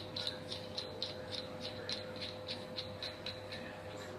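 Faint, even ticking, about four ticks a second, over a steady low hum.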